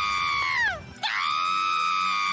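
A cartoon character screaming in two long, high wails. The first is held, then falls away just under a second in; the second starts right after and holds steady.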